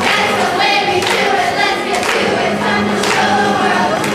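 A children's cast singing together in chorus over music, with clapping in time about once a second.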